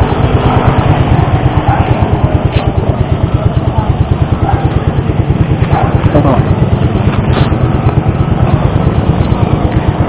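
Keeway Cafe Racer 152's single-cylinder engine idling close by: a steady, rapid low pulsing.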